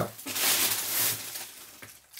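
Paper pages of an exercise notebook rustling as they are handled and turned, a soft hiss that fades away near the end.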